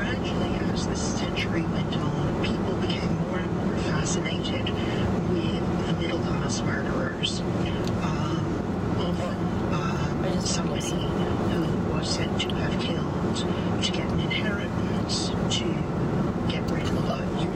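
Steady road and tyre noise inside the cabin of a 2011 VW Tiguan SEL cruising at highway speed on 18-inch wheels with 50-series tyres. The voices of a talk programme play underneath it.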